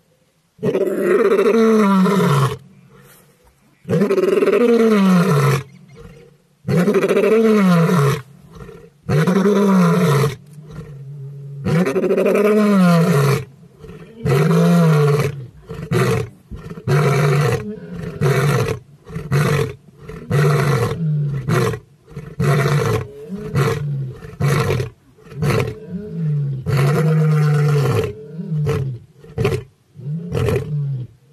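Male lion roaring: about five long, deep roars of roughly two seconds each, each falling in pitch at its end, then a run of shorter grunts that come closer and closer together through the second half.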